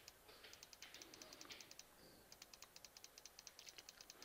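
Faint, rapid clicking at a computer, about ten even clicks a second, in two runs with a short break around two seconds in.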